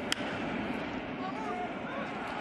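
A baseball bat cracking once against a pitched ball, a single sharp crack just after the start as the batter puts a ground ball in play, followed by low, steady stadium background noise.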